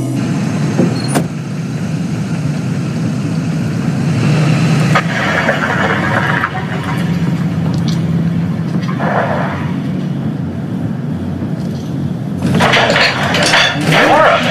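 City street traffic: a steady rumble of passing cars and vehicles. Near the end it gives way to party chatter and music.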